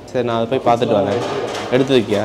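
A man's voice, talking or making wordless vocal sounds; no other sound stands out.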